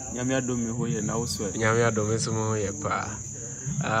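Crickets trilling in a steady high-pitched drone throughout, under louder stretches of talking.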